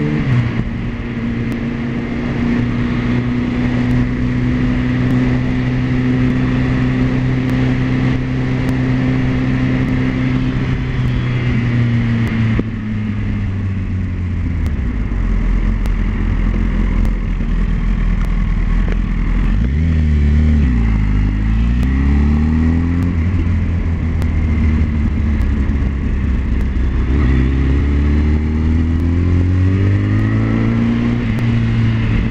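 Motorcycle engine heard from the bike while riding: it holds a steady pitch, drops off about twelve seconds in as the bike slows, dips and climbs again around twenty seconds in, and rises once more near the end as it accelerates.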